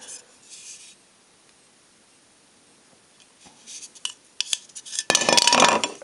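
A die-cast Eaglemoss USS Relativity starship model clattering onto a wooden tabletop for about a second near the end, with a brief metallic ring: it has been fumbled and dropped. A few light knocks and clicks come just before it.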